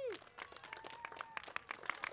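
Thin, scattered applause from a small crowd: many separate hand claps, fairly quiet.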